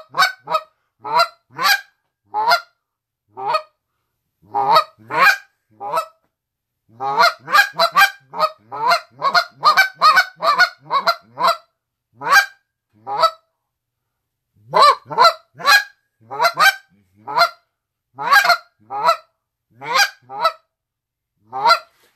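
Next Gen Mr. Big goose call blown in short, clean clucks and honks in a sporadic, uneven rhythm, each note cut off before the next starts, imitating Canada geese on the ground. The notes come in bursts separated by pauses of a second or two.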